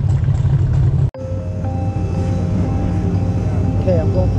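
A steady low rumble breaks off for an instant about a second in, then carries on under long held musical notes as background music begins.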